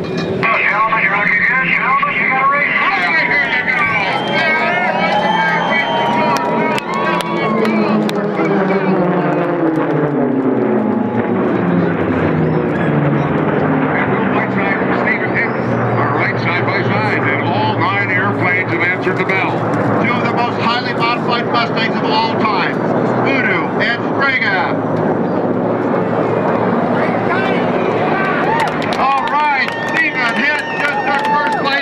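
Unlimited-class piston-engine racing warbirds flying past at race power, their engine note dropping steeply in pitch as they go by, then a steady low drone of engines.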